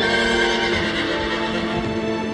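A horse whinnies in the first second, then its hooves clop, over background music.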